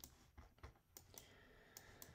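Faint, light clicks from a computer mouse and keyboard, about half a dozen spaced irregularly, against near silence, as a chart's timeframe is changed and scrolled.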